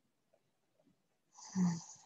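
A woman's single short, noisy breath through the nose and throat, about one and a half seconds in, lasting under a second.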